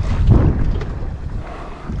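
Wind buffeting the microphone as a low rumble, loudest in the first half second.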